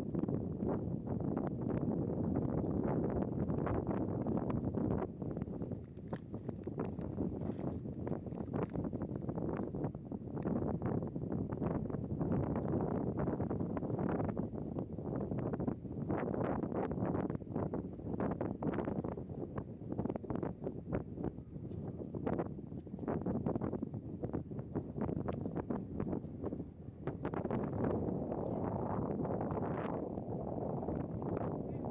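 Wind buffeting the microphone outdoors: a low, gusty rumble that rises and falls, with brief dips, scattered with short crackles.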